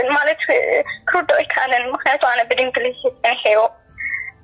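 Speech only: one person talking steadily, the voice thin and cut off at the top, as heard over a telephone line.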